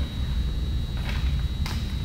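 A steady low room hum with a faint high-pitched whine over it, and a few soft rustles of paper sheets being handled.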